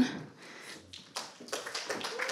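Sparse light taps and claps, only a few at first and more of them in the second half.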